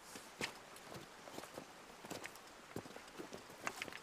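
Footsteps of several people walking over river stones and gravel: irregular sharp clicks and knocks of stones shifting underfoot, a few per second.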